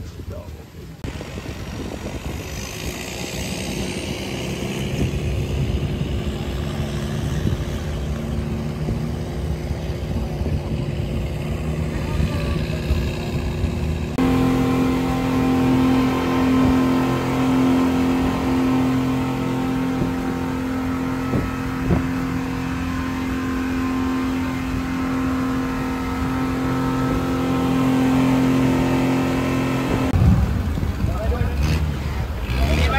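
An engine running steadily, then, after a cut about 14 seconds in, a speedboat's engines running at speed: a loud steady hum with water rushing past the hull.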